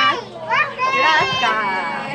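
A woman's high-pitched voice in drawn-out, excited exclamations.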